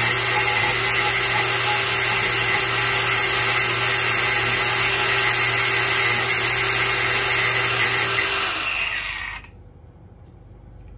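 Cordless angle grinder with a Bosch cutting disc cutting through a metal nail, a loud steady grinding hiss over the motor's hum. About eight seconds in the motor is switched off and the sound dies away within about a second.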